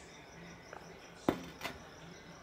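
A glass beer bottle set down on a table, one sharp knock about a second in followed by a lighter one, over faint crickets chirping in the background.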